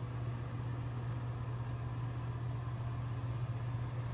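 Steady low hum of a running ventilation fan, unchanging throughout.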